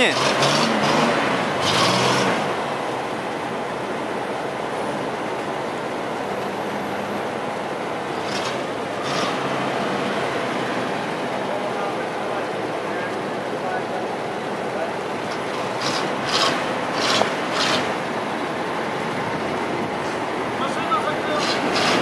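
Old Studebaker pickup truck driving slowly, its engine running with a steady sound, with a few short louder sounds about a third of the way in and again past the middle.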